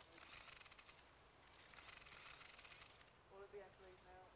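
Faint press camera shutters and motor drives firing in two rapid bursts of clicks, the second starting about two seconds in.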